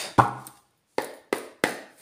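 A deck of tarot cards being handled and shuffled by hand: a few sharp card slaps and taps about a third of a second apart, the loudest just after the start.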